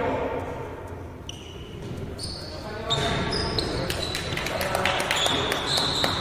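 Indoor basketball game on a hardwood court: a ball bouncing and players' shoes moving on the floor, echoing in a large gym hall. It is quieter for the first two to three seconds and busier from about three seconds in.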